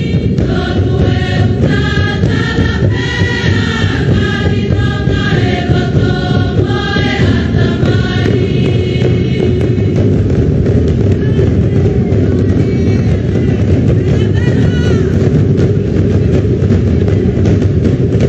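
Tongan ma'ulu'ulu: a large choir of schoolgirls chanting in unison over steady drumming on large cord-laced skin drums. About eight seconds in, the singing fades and the drumming carries on, with only faint voices.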